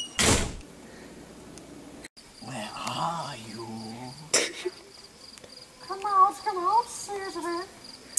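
Crickets trilling in a steady high tone, under indistinct low voices and vocal sounds. There is a sharp thump just after the start.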